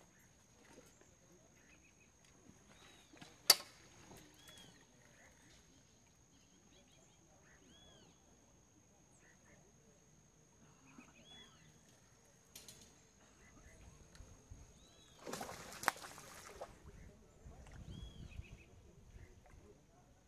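Quiet outdoor ambience with a short call repeating every couple of seconds and a steady high thin tone, broken by a sharp click a few seconds in and a rush of noise with a click lasting about a second and a half, about fifteen seconds in.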